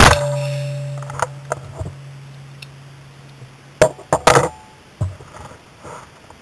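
A 12-gauge Browning Silver semi-automatic shotgun fires once, close up, with a long ringing decay. About four seconds in comes a quick series of sharp metallic clicks and clacks from handling the gun, with one more about a second later.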